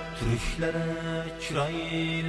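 Live Central Asian folk ensemble music in a passage without sung words: sustained melodic notes over a low steady drone, with a slide in pitch about one and a half seconds in.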